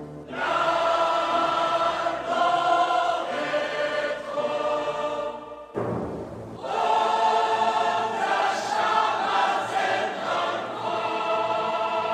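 Solemn choral music: a choir sings long sustained chords, with a short break about halfway through before the singing comes back in.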